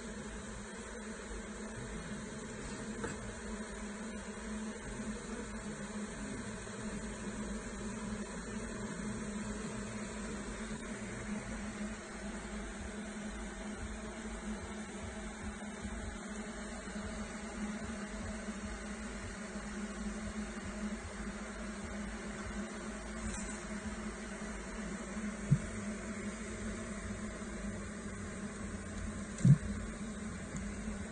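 Honey bees from an open hive and frames of comb buzzing in a steady hum. Two sharp knocks near the end as wooden frames are set into the hive.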